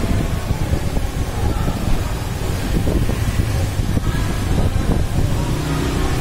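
Steady low rumble and hiss with faint, indistinct voices mixed in.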